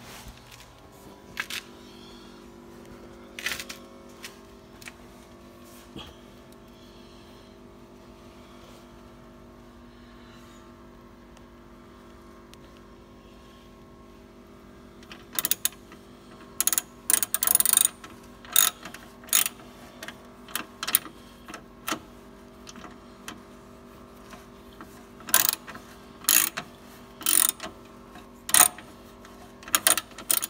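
Ratchet wrench clicking in short bursts, starting about halfway through, as the starter motor's mounting bolts are worked loose; a steady low hum runs underneath.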